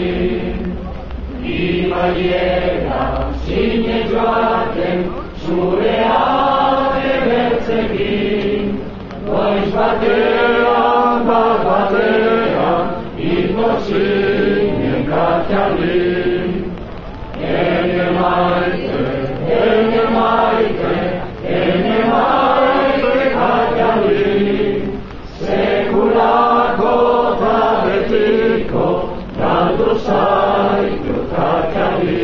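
A large crowd singing Basque songs together, in phrases of about four seconds with brief pauses between them.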